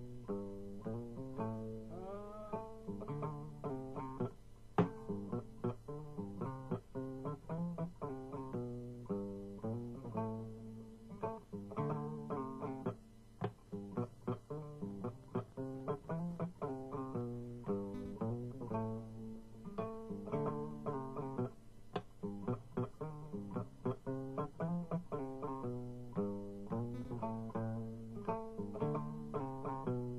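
Instrumental music on a plucked string instrument: quick, repeating runs of short plucked notes that keep going without a voice.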